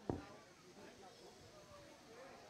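A single dull thump just after the start, followed by faint background chatter.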